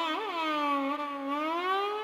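Violin playing a slow Indian classical melody over a steady drone. It wavers in fast ornamental turns near the start, then slides down gently and glides back up near the end.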